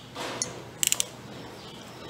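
Keyless chuck of a cordless drill being hand-tightened on a drill bit: a brief rub of the hand on the chuck, then a quick run of three or four sharp ratchet clicks just before a second in.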